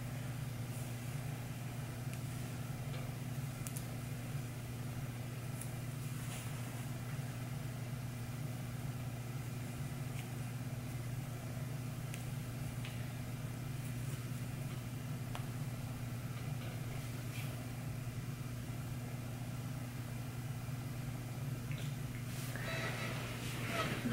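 Steady low room hum, with a few faint clicks and rustles of hands twisting hair into a bun and tying it with a hair tie.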